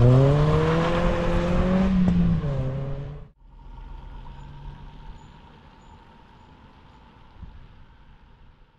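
Ford Focus four-cylinder engine revving hard as the car accelerates away, pitch climbing and then dropping at a gear change about two seconds in. After a sudden cut about three seconds in comes a much fainter, steady hum of a car driving away, fading out.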